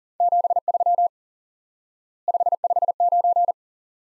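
Morse code sent as a single steady pitched tone at 40 words per minute: two short groups of dots and dashes with a pause of about a second between them, the repeat of two QSO elements.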